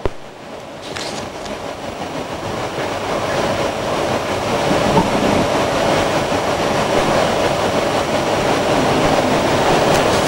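Applause from a large seated audience in an auditorium, a dense, even clatter that grows steadily louder.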